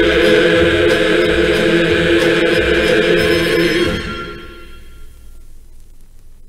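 Sing-along chorus holding the final chord of the song on a vinyl record, fading out about four seconds in. Faint record surface noise is left after the fade.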